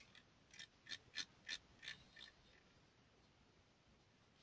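A run of about six faint, sharp computer-mouse clicks, roughly a third of a second apart, starting about half a second in and ending a little after two seconds.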